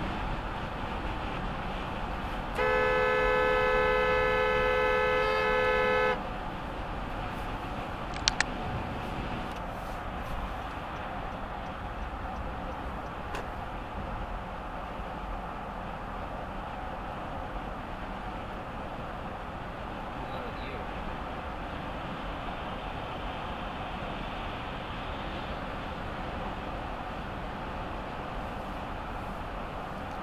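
A car horn blows one long steady blast of about three and a half seconds, two notes sounding together, starting a few seconds in. Steady road and tyre noise from a car driving at highway speed runs under it.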